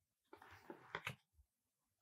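Near silence, with a few faint, soft taps about half a second to a second in, as a paper oracle card is laid down on a wooden table.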